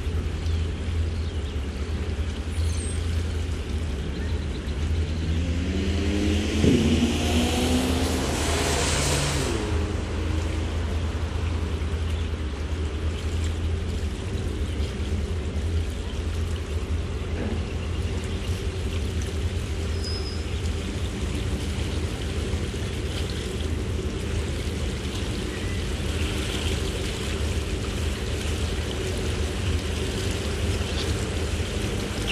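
Steady low rumble of a Sea Ray Sundancer's Mercruiser 7.4 L inboard running at slow cruising speed, with water washing along the hull. A rising engine note and a short whoosh stand out about seven to nine seconds in.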